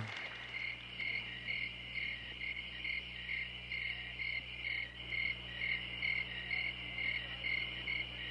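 Crickets chirping in an otherwise silent room, a steady high trill with a regular chirp about twice a second: the comic sound of an audience giving no applause at all.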